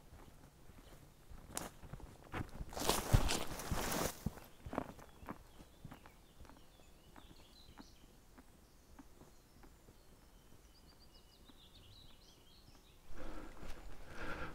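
Footsteps on a dirt path through scrub, coming up close and passing at about three to four seconds in, then fading as the walker moves away.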